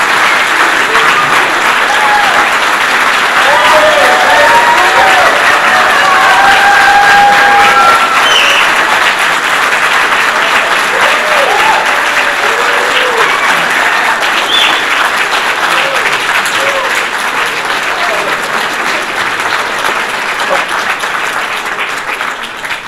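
A large audience applauding loudly, with cheering voices over the clapping; the applause slowly dies down toward the end.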